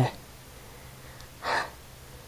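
A single short breath from a person close to the microphone, about one and a half seconds in, over a faint steady low hum.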